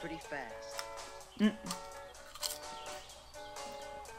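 Quiet background music with long held notes, under faint crunching from a potato crisp being chewed. A man gives a short "mm" of tasting about a second and a half in.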